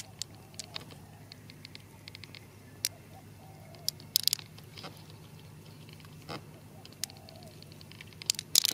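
Glass marbles clicking against each other in a hand as more are added. The clicks are small and scattered, with a quick cluster of sharper ones about four seconds in, over a low steady hum.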